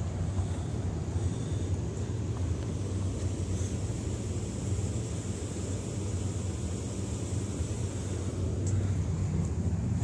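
Steady low outdoor rumble with a faint hiss above it and no distinct events.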